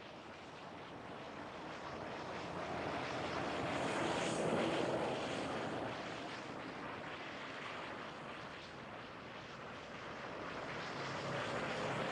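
A distant engine passing by: a rumble that swells to its loudest about four to five seconds in, then fades, and begins to build again near the end.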